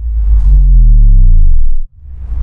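Loud deep synthesized bass hit from an intro music sting, its pitch sliding downward, cutting off suddenly just before the end.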